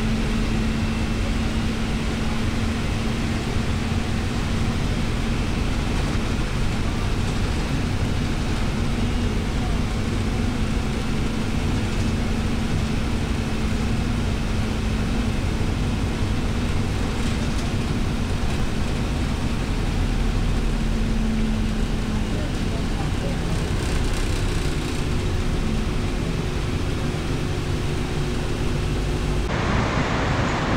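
Steady engine and road noise heard from inside a moving vehicle in city traffic, with a low steady hum. The sound changes abruptly just before the end.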